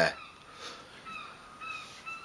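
A bird calling faintly a few times, short high calls spread across a couple of seconds.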